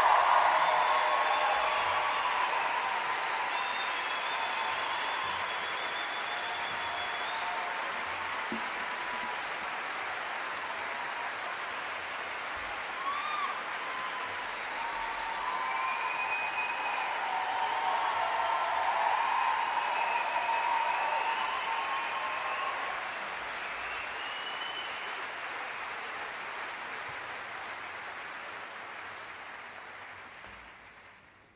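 Concert-hall audience applauding and cheering after a song ends, loudest at first, swelling again about two-thirds of the way through, then dying away near the end.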